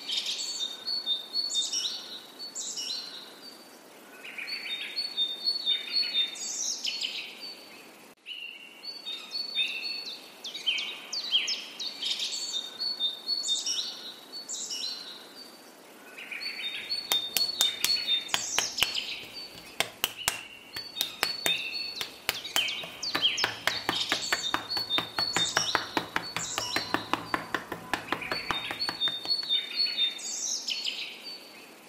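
Songbirds chirping and singing, the same phrases coming round again about every eight seconds. Just past halfway, a quick irregular run of sharp clicks and a low hum join in and run on until shortly before the end.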